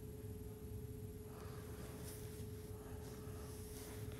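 Faint room tone: a steady low hum with a constant tone running through it, and a soft rustling noise starting about a second in.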